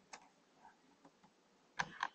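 A few sparse computer keyboard keystrokes: a faint click just after the start, then two louder clicks close together near the end.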